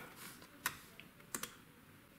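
Two faint, short clicks of a transparent plastic set square and felt-tip pen on a drafting board as the square is shifted to rule 45° lines, about half a second apart near the start and again just before the middle.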